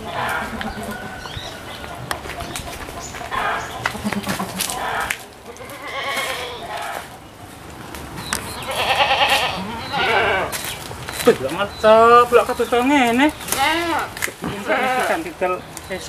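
Goats bleating several times, the calls loudest and most quavering in the second half.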